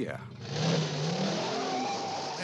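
Pontiac Firebird Trans Am V8 revving hard as the car launches in a burnout, starting about half a second in: engine pitch climbing then holding, with loud tyre squeal and hiss.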